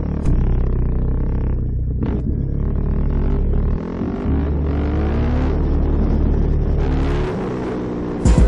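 Yamaha WR250F dirt bike's single-cylinder four-stroke engine with an aftermarket Lexx exhaust, revving and pulling as the rider accelerates along the street. The throttle drops off briefly about four seconds in, then the revs climb again.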